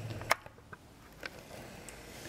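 A few light clicks over quiet room tone: one sharp click about a third of a second in, then two fainter ticks later.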